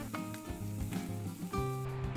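Sliced potatoes sizzling on a griddle plate over the grill, under steady background music.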